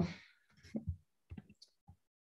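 A voice trails off, then a few faint, short clicks sound over the next second and a half.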